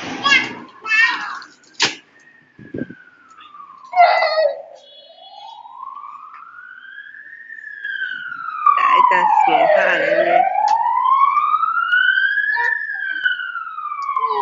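An emergency-vehicle siren wailing, its pitch rising and falling slowly with about five seconds per cycle, growing much louder about eight seconds in. Children's voices are heard at the start and again around the loudest stretch.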